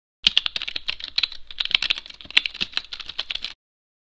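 Fast typing on a computer keyboard: a quick run of key clicks that starts just after the beginning and cuts off suddenly about three and a half seconds in.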